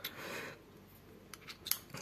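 Light metallic clicks of a screwdriver bit being pulled out and handled: one click at the start, then three or four quick small clicks near the end.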